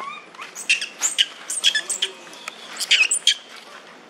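Macaques giving a quick series of short, high-pitched squeaks and shrieks, about a dozen over three seconds.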